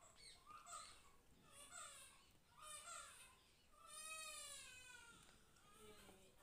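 Faint, distant animal calls: several short cries, then a longer one that rises and falls about four seconds in.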